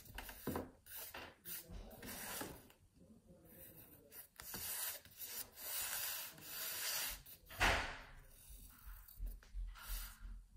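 Rubber eraser rubbing back and forth on a sheet of paper on a desk, in short irregular strokes, then the paper being shifted and handled. A louder thump about eight seconds in.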